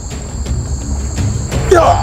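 Steady high-pitched drone of insects over a low rumble, with a short shouted cry rising in pitch near the end.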